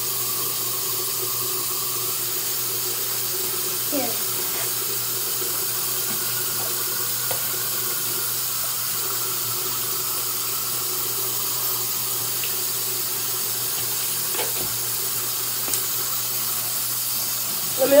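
Bathroom tap running steadily into a sink, with a few small clicks and knocks.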